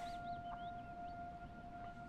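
Film soundtrack: a single steady held tone, with faint warbling chirps gliding up and down above it in the first second.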